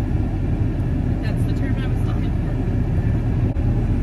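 Steady low rumble of a pickup truck heard from inside the cab, the engine and road noise of the truck under way.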